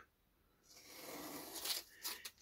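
Faint rustling and crinkling of masking tape being peeled off a painted panel and handled, starting about half a second in after a brief silence.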